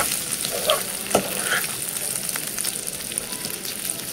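A plastic spatula stirring boiled potato cubes and crushed peanuts in a sizzling nonstick frying pan: a steady hiss with scraping and light clicks, and one clearer knock against the pan about a second in.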